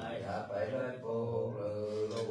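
A man chanting a Then ritual song in a steady melody with long held notes.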